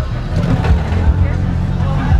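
Lowered cars driving slowly past close by, giving a deep, pulsing low rumble, with people talking in the crowd.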